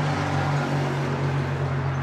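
A motor vehicle running close by: a steady low engine hum under an even rush of noise.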